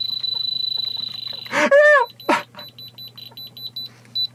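Handheld diamond tester beeping as its probe is pressed to diamond-set tooth grills. It gives one steady high beep for about a second and a half, then a rapid run of short beeps.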